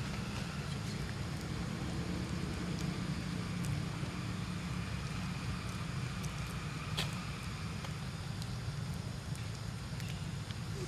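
Steady low rumble of outdoor background noise, with a faint high hum over it and a single sharp click about seven seconds in.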